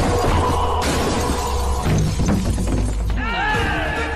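Car window glass shattering as a body is smashed through it, over a loud action film score; a few sharp hits follow about two seconds in.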